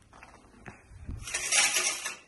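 A curtain being pulled open along its rod: a few faint clicks and a soft knock, then a louder scraping swish from about halfway through that eases off at the end.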